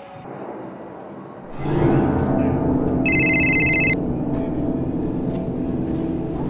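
A mobile phone ringtone sounds once, about three seconds in, as a high electronic tone lasting about a second. It plays over a steady low background sound that comes in about a second and a half in.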